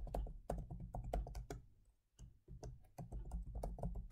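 Typing on a computer keyboard: a quick run of key clicks, a short pause about halfway, then more typing.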